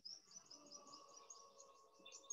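A bird chirping faintly, a quick run of short high chirps at about five a second, over near silence.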